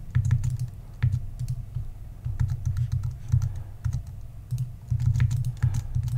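Scattered, irregular clicks of a computer mouse and keyboard keys as a photo is edited, over an irregular low rumble.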